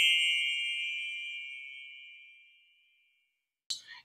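A single bell-like ding fading away over about two and a half seconds, then quiet until speech resumes near the end.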